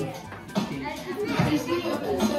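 Several people talking over one another, children's voices among them: party chatter.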